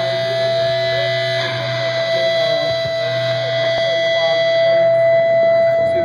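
Amplified electric guitar holding one steady distorted tone over a low amplifier hum; the tone breaks off briefly near the end.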